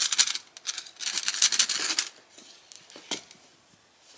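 A cat wand toy being handled and moved over a looped carpet: two short spells of quick scratchy rattling, then a single click about three seconds in.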